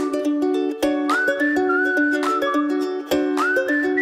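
Light intro music: a whistled tune that slides up into held notes, over quick plucked-string chords.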